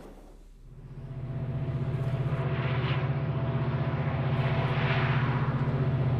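Diesel locomotive engines running with a low, fast, even throb and a faint steady whine above it. The sound fades in about a second in, builds, then holds steady as the locomotives come out of the tunnel.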